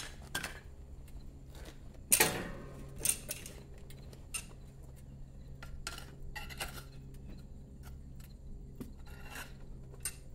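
Metal clanks and clinks of crucible tongs and lifting handle against a steel crucible, a few sharp knocks, the loudest about two seconds in with a short ring. A steady low hum runs underneath.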